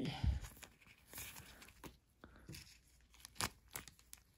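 Thin plastic penny sleeve rustling and crinkling in gloved hands as a trading card is slid into it. Scattered short crinkles and clicks, the sharpest about three and a half seconds in.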